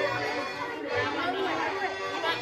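Children's voices chattering over dance music with steady held notes.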